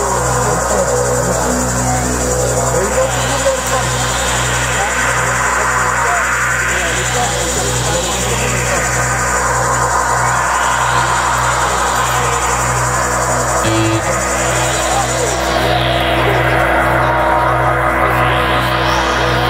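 Live band playing an electronic instrumental intro: a synthesizer drone over a pulsing low bass note, with slow whooshing filter sweeps that rise and fall every three to four seconds.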